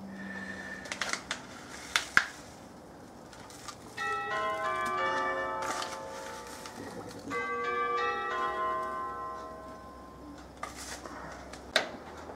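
A timer alarm chiming, a falling run of bell-like tones played twice in a row, about four seconds in and again near seven seconds: the signal for flame-out at the end of the boil. A few short clicks of handling come before and between.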